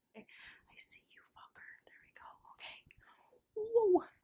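A woman whispering softly, then speaking aloud near the end.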